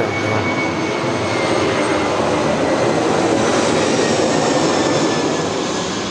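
Aircraft flying overhead: steady engine noise that grows louder toward the middle and then fades, with a faint high whine slowly falling in pitch.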